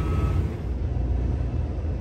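Steady low rumble of an idling heavy diesel truck engine.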